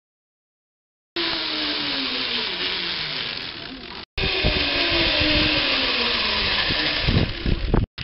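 Zipline trolley pulleys running along the steel cable: a whirring hum over rushing wind noise, starting about a second in, its pitch sinking as it goes. It breaks off for an instant about four seconds in and resumes with a steadier whirr, and wind buffets the microphone near the end.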